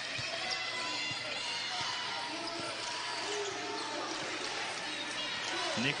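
Arena crowd noise as a steady murmur, with a basketball being dribbled on the hardwood court and faint voices from the court. Commentary resumes right at the end.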